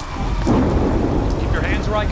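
A deep rumble swells in about half a second in and holds.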